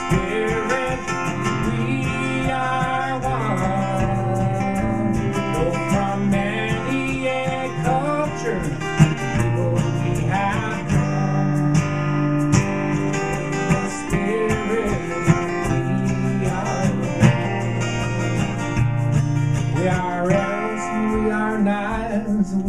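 Ovation roundback acoustic guitar strummed steadily through an instrumental passage, with a gliding melody line carried above it.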